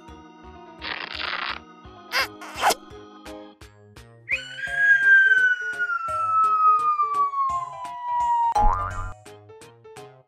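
Children's background music with cartoon sound effects laid over it: a short whoosh about a second in, a quick double boing at about two seconds, then a long whistle-like tone sliding slowly downward, ending near the end in a quick upward zip and a low thump.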